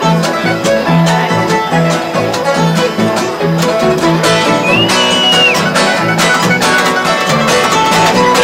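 Acoustic string band playing an instrumental break: upright bass plucking a steady line of notes under two flat-picked acoustic guitars, with a short high note that slides up and back down about halfway through.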